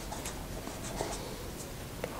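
Pen writing numbers on paper: faint scratching strokes with a few light ticks.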